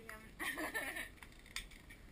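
A faint voice murmuring briefly about half a second in, with a single faint click later; otherwise a quiet room.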